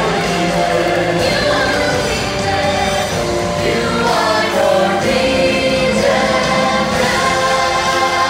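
Live show music: singers with handheld microphones singing over a backing track, joined by many voices singing together like a choir.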